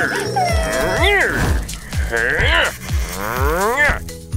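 Cartoon characters crying in long wailing sobs, each rising and falling in pitch, three times over background music.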